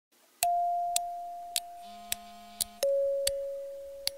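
A two-note descending 'ding-dong' chime: a higher note struck about half a second in, a lower one a little before three seconds, each ringing on and fading slowly. Sharp ticks sound regularly about every half second underneath.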